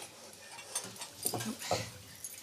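Faint clinks and rubbing of silverware being polished with cloths, with two short, low vocal sounds a little after the middle.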